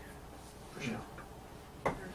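A man speaking a few quiet words, with one sharp click near the end, in a quiet small room.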